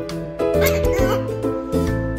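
Background children's music, and about half a second in, a short high squeaky cartoon-like voice from a Jabber Ball pig coin bank, set off by a coin dropped into its slot.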